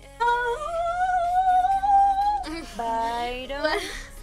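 A woman's voice humming a long note that rises slightly for about two seconds, then a shorter sung phrase that wavers in pitch, over quiet background music.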